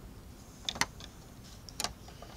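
Plastic Lego pieces clicking as fingers handle the model: a few short sharp clicks, a pair just under a second in and another pair near the end.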